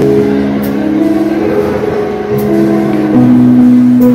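Live rock band playing a slow ballad through the PA: keyboard and electric guitars holding sustained chords that change about once a second, loud and steady.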